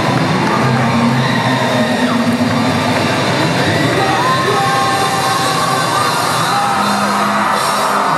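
A live rock band playing loud, amplified electric guitars, with an audience yelling.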